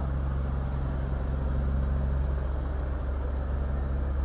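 Cargo boat engine running steadily: an even, low drone.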